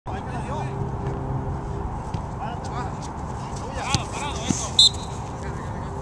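Players' voices shouting and calling across an open soccer field over a steady low hum, with a couple of sharp knocks around the middle and a brief high peep near the end.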